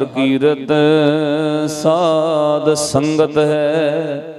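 A man's voice singing a line of Gurbani in a slow, melodic chant into a microphone, holding long notes that waver in pitch.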